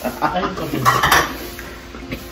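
Plates and cutlery clinking and clattering as dishes are handled at a kitchen sink, with the loudest clatter about a second in.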